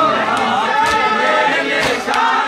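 Crowd of men chanting a mourning lament (noha) together, with a few sharp slaps of hands striking bare chests (matam) cutting through the chant.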